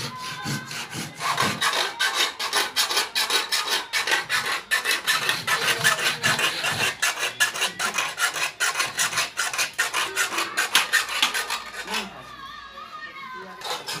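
A hand tool rasping at the end of a wooden plank in rapid, rhythmic scraping strokes, about four a second. The strokes pause briefly near the end, then start again.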